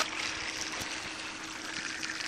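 Water trickling steadily, with a faint steady hum underneath.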